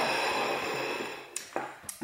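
Plates being slid across a wooden table, a steady scraping hiss that fades out after about a second, followed by two light knocks as they are set down.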